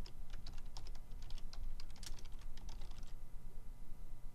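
Computer keyboard typing: a quick run of keystrokes that thins out to a few taps about three seconds in.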